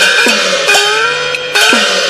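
Chinese opera percussion: gongs and cymbals struck in a brisk rhythm, each stroke ringing with a gliding pitch. The pattern thins near the end as the closing music winds down.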